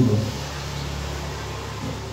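A pause in a man's talk into a handheld microphone: the tail of his last word right at the start, then a steady low electrical hum with faint hiss.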